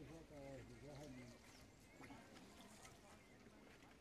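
Near silence, with faint voices speaking in the first second or so, then a few faint, short, high chirps.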